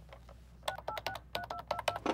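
Push-button desk telephone being dialed: a quick run of short touch-tone beeps in two groups, each with the click of a key, starting about two-thirds of a second in.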